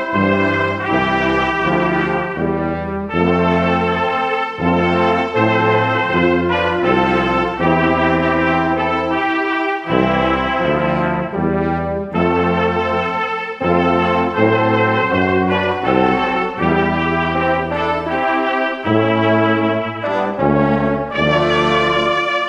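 Brass band playing a Christmas carol, with full held chords that change every second or so.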